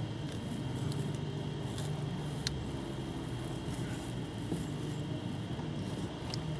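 Steady low mechanical hum under the hood, with a few light clicks as a test-light probe is worked into the back of a wiring connector.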